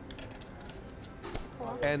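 Quiet table ambience with a few soft clicks of clay poker chips being handled. A man's commentary voice starts near the end.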